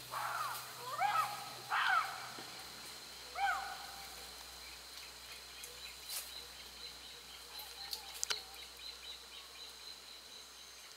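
Young chimpanzee giving four or five short hooting calls in the first few seconds, each rising then falling in pitch. A steady high insect whine and a few faint clicks follow.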